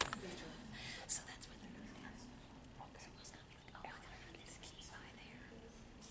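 A few people whispering in low voices, with a brief sharp sound about a second in.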